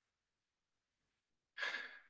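Near silence, then about one and a half seconds in, a single short breathy exhale from a person that fades away.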